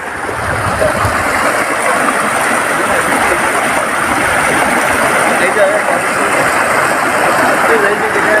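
Shallow river water running over rocks and small rapids, a loud, steady rush. Faint voices come through it now and then.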